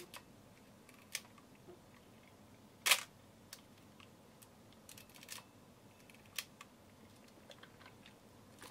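Centon K100 35mm SLR film camera being handled, giving scattered small clicks and taps from its body and controls. The loudest is a sharp click about three seconds in.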